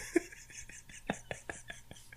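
A person's voice whispering quietly, with faint small clicks.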